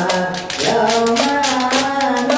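Voices chanting together in long held notes that step up and down in pitch, over a quick, steady percussion beat of about four to five strokes a second. The singing dips briefly about half a second in.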